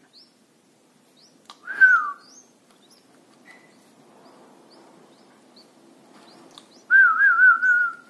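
A person whistling twice: a short falling whistle about two seconds in and a longer wavering whistle near the end, over faint high chirps from red-whiskered bulbul nestlings.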